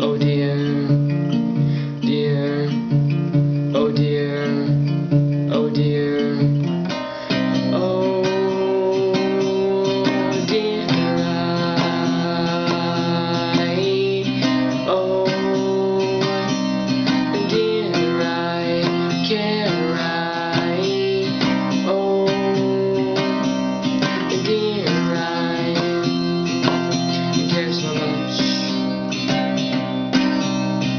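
Cutaway acoustic guitar strummed in an instrumental passage, the chords changing in a repeating pattern. About seven seconds in, the strumming becomes fuller and more continuous.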